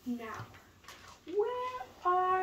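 Two short meow-like calls: a brief falling one right at the start, then a longer one about a second and a half in that rises and then holds its pitch.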